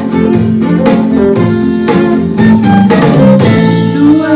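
A small live band playing an instrumental passage of a pop-disco song with no vocals: fiddle and guitar over a steady beat.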